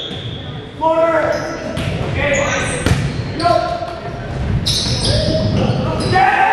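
Volleyball rally in a gymnasium: players shouting calls to each other, with two sharp hits of the ball on hands or arms near the middle.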